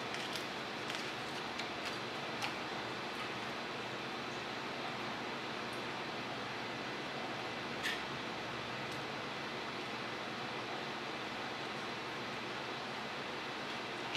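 Steady background hiss of a workshop room, with a few faint light clicks and taps in the first couple of seconds and one more about eight seconds in.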